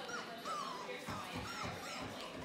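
Four-week-old Labrador Retriever puppies whining: about four short, high cries that rise and fall, the second one longer. A few low thumps come in the second half.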